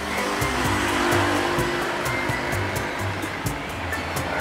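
Steady hiss of a gas stove burner under a pot of soto broth kept on the heat, with background music and a steady beat.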